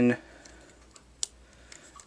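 A few small plastic clicks from a Transformers minibot toy figure being handled, with one sharper click a little past halfway.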